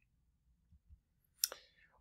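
Near silence with a single sharp click about one and a half seconds in.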